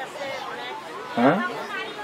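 Speech only: faint background chatter of voices, with a short spoken phrase about a second in.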